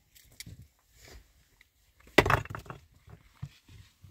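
Loose limestone blocks being set down and knocked against one another while a stone hearth is built up by hand. A few soft knocks and scrapes, with one loud stone-on-stone clack about two seconds in.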